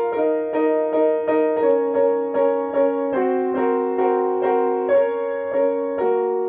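Piano chords struck over and over, about three a second, the harmony shifting a few times, with the note under the second finger brought out above the rest of the chord as a voicing exercise.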